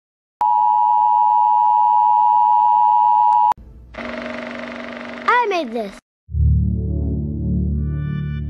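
Emergency Broadcast System attention signal: a loud, steady two-tone beep that lasts about three seconds and cuts off suddenly. Then comes a quieter hissy stretch with a swooping glide, and slow, low synth music begins about six seconds in.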